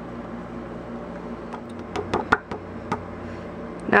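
Fingers tapping the back of a sheet of cardstock held over a plastic tub, knocking the excess clear embossing powder off: several sharp taps from about one and a half to three seconds in, over a steady hum.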